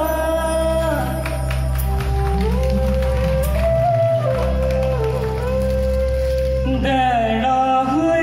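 Garhwali mangal geet, the auspicious folk song that opens a programme, sung slowly with long held notes that glide between pitches, over a steady low drone from the band. The drone drops out briefly about four seconds in.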